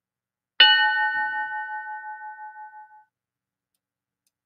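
A single bell-like chime struck once about half a second in, ringing with several overtones and fading out over about two and a half seconds.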